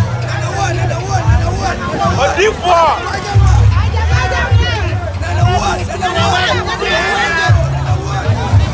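A crowd shouting and cheering, many voices overlapping, over loud music with a heavy bass.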